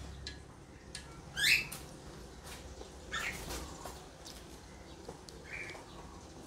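Three short chirping calls, about a second and a half apart, the first the loudest, typical of a bird, with a few faint clicks between them.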